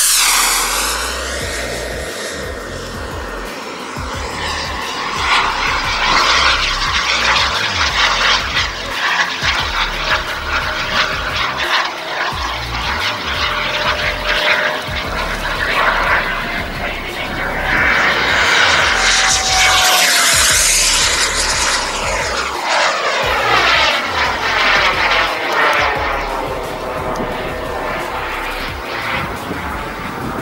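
Kingtech K140 turbine of a radio-controlled jet running at high power, its hiss and whine rising and falling as the model makes passes, loudest about twenty seconds in. Instrumental music plays underneath.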